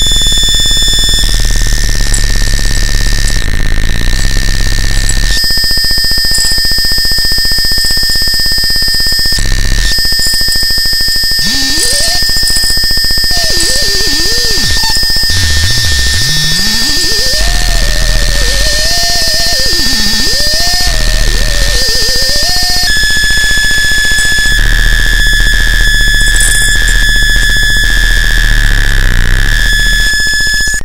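Experimental electroacoustic noise music: a loud, dense wall of hiss with steady high whistling tones, starting abruptly. Through the middle a wavering tone glides up and down, dipping low and climbing back again.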